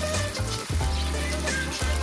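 Fish-head pieces and whole spices sizzling in hot oil in a metal wok, under background music with a steady bass line.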